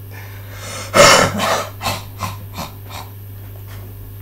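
A person's breathy vocal outburst: one loud burst of breath about a second in, then four or five weaker, shorter bursts fading out.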